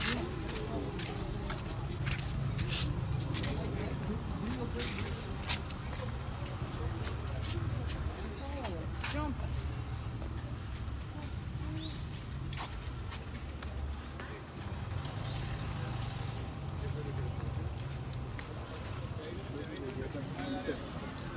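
Indistinct voices of people in the background over a steady low rumble, with scattered short knocks and clicks.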